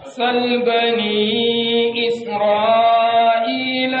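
A man's voice chanting in Arabic in long, held melodic notes, each drawn out for a second or more, with a few changes of pitch.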